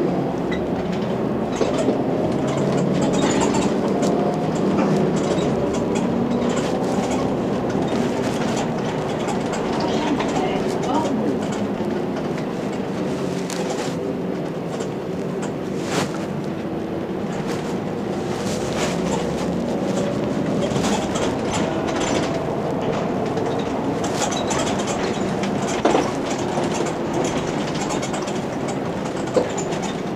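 Inside a Mercedes-Benz Citaro G C2 NGT articulated natural-gas bus on the move: the engine runs under steady road and cabin noise, its pitch rising as the bus picks up speed in the second half. A few sharp clicks and rattles from the body stand out over it.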